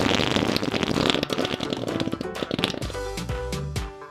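A long, loud fart sound effect for a cartoon elephant. It is a rapid, buzzy rasp that fades out over the first couple of seconds, over light background music.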